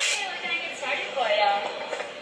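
A short burst of static hiss, then a voice speaking with no clear words.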